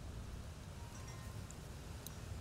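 Quiet background between words: a steady low rumble, with a few faint high chime-like tones and a small tick about one and a half seconds in.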